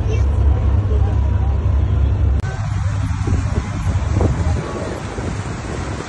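Passenger boat under way: a steady low engine rumble with wind and water noise. The sound changes abruptly about two and a half seconds in, and the rumble fades toward the end while the wind noise carries on.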